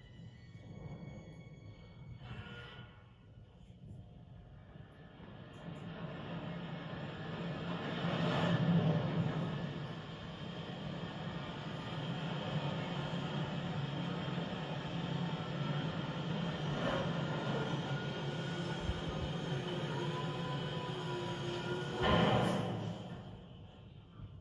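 Open fire in a grate burning hard, with a low, steady rumble of draught. It builds over the first few seconds and swells twice, about eight seconds in and again near the end.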